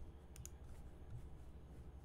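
Near silence over a low steady hum, with two faint sharp clicks close together about half a second in.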